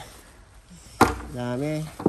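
A single sharp click about a second in, followed by a brief spoken sound.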